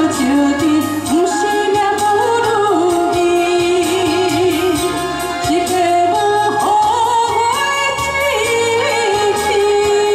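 A woman singing live into a microphone over an amplified backing track with a steady beat, her held notes wavering with vibrato.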